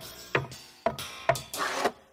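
Animated Luxo desk lamp hopping sound effects: a sharp knock about twice a second, each with a short ringing tail, then a longer rasping sound near the end.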